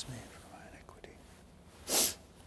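A man whispering the end of a quiet prayer close to the microphone, the priest's low-voiced prayer at the washing of hands ("cleanse me"), then faint murmuring. Near the end comes a short, loud, breathy rush of noise.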